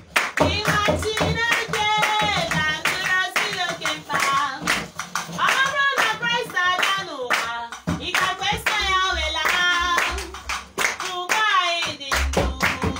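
A group of voices singing a worship song together with rhythmic hand clapping.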